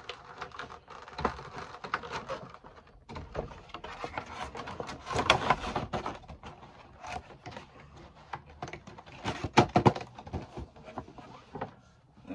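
Cardboard Funko Pop boxes and a clear plastic protector case being handled and moved about: rustling, scraping and light knocks throughout, loudest in a burst of rustling about five seconds in and a few sharp knocks near ten seconds.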